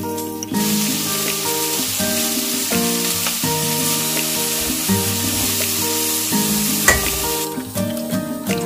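Sliced Korean zucchini sizzling as it stir-fries in a pot, stirred with a wooden spatula. The sizzle starts about half a second in and stops shortly before the end, with a single knock near the end. Soft background music plays throughout.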